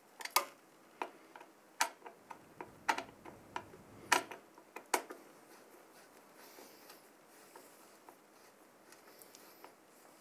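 Irregular sharp clicks and ticks of metal hardware as the CPU cooler's mounting-bracket screws are turned down, about a dozen over the first five seconds, then only faint handling noise.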